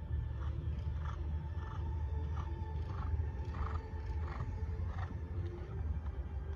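Dressage horse blowing out rhythmically in time with its strides, about one and a half breaths a second, over a steady low rumble.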